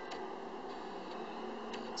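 Steady background hiss with a few faint clicks spread through it.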